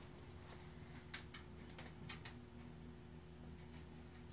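Faint, soft clicks of playing cards being handled and pushed together in the hands, a few scattered ticks over a steady low hum of room tone.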